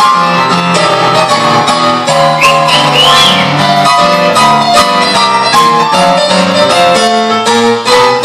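Electronic keyboard playing a busy instrumental passage of a swing tune, a steady run of changing notes with no singing. Brief wavering high notes come in about two and a half seconds in.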